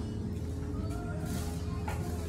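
Background music playing over the steady hum of a restaurant dining room, with a short click near the end.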